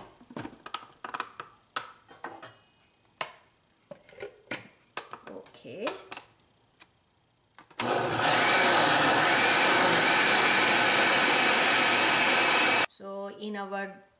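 Oster countertop blender running at full speed for about five seconds, pureeing a thick cooked tomatillo salsa, then cutting off suddenly. A few light knocks and clicks come before it starts.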